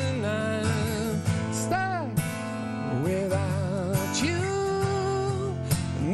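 A man singing held, wavering notes over a strummed acoustic guitar: a live acoustic pop song performance.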